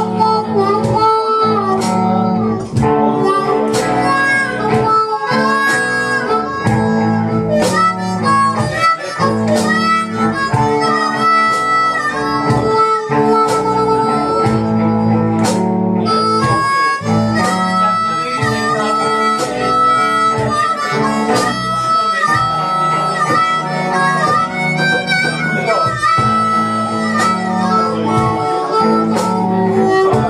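Blues harmonica solo, the harp cupped against a handheld microphone, with long held and bent notes over electric guitar, bass guitar and steady percussion from a live blues band.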